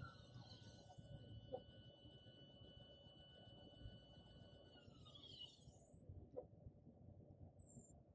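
Near silence: faint background hiss with a couple of faint ticks.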